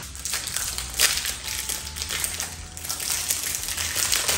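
Clear plastic contact-lens blister pack crinkling and crackling as fingers work it open, with a sharper crack about a second in.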